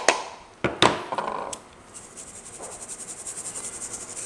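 A few knocks of the blender jar against the mesh sieve, then a stainless wire-mesh sieve shaken rapidly, ground black pepper rattling on the mesh and sifting through in a faint, fast, even patter.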